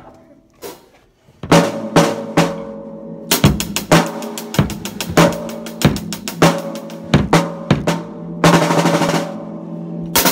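An acoustic drum kit played with sticks: a few light taps, then a beat that starts about a second and a half in and gets busier, with snare, tom and bass drum hits ringing between strokes. A fast run of hits comes near the end.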